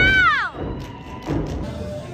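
A high-pitched call from the crowd that falls away about half a second in, then heavy thuds of dancers stomping on the stage, over crowd noise.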